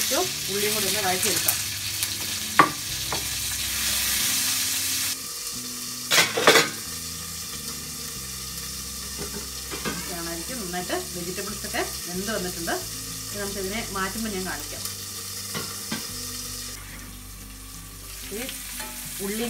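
Chicken and freshly added vegetables sizzling in a frying pan on a gas burner. The sizzle is loud at first, then drops to a quieter, steady sizzle about five seconds in, under a glass lid. There are sharp metal knocks of cookware about two and a half seconds in and again around six seconds.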